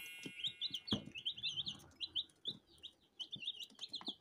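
A box of three-day-old chicks peeping: a steady run of short, high cheeps from many birds at once, with a few soft taps among them.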